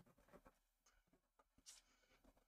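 Near silence, with a few faint, short scratches about a third of a second in and again near the end: a pen stylus drawing strokes on a tablet.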